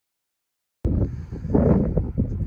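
Silence, then wind buffeting the microphone cuts in suddenly a little under a second in, a loud low rumble.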